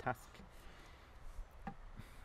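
A man's voice ends a word at the very start, followed by a quiet pause of faint low background rumble with a few small clicks, the clearest about a second and a half in.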